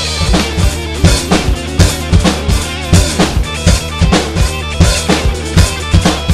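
Acoustic rock drum kit played hard with sticks: kick drum, snare and crashing cymbals in a steady driving beat, about two strong hits a second. It plays along with the recorded song's bass and guitar.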